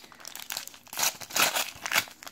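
Foil trading-card packet (Panini Adrenalyn XL Premium) crinkling as it is torn open by hand, with louder bursts of crackle and ripping about a second in and again near the end.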